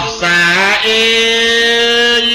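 A male voice sings a Khmer chapei verse in a chanting style: a short wavering phrase that slides upward, then from just under a second in, one long, steady held note.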